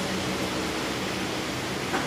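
Steady hiss of background noise, with no speech and no distinct events.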